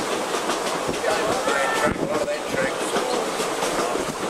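Vintage railway carriage running along the track, heard from inside the carriage: a steady rolling rumble with the wheels clicking over the rail joints.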